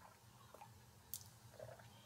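Near silence: faint mouth and swallowing sounds from sipping a drink from a mug, with a small click about a second in.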